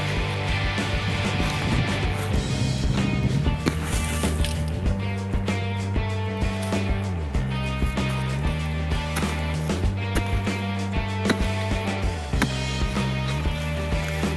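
Background music with a steady bass line that changes pitch every second or two, and a quick run of short beats.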